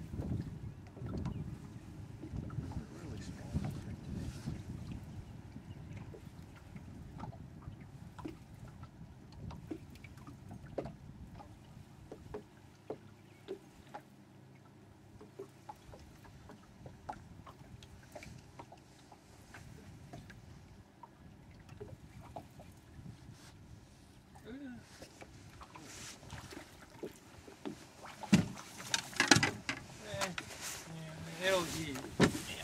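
Small fishing boat on open water: water lapping against the hull and a low wind rumble, with scattered light clicks and knocks from gear being handled in the boat. A cluster of sharp, louder knocks comes near the end.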